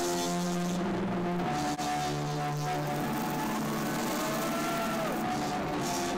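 Live band music heard from the crowd, with sustained held notes, a momentary dip about two seconds in, and gliding, bending notes near the end.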